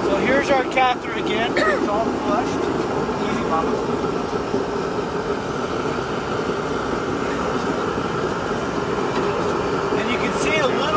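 Indistinct voices for the first two seconds or so, then a steady low hum that runs on under everything.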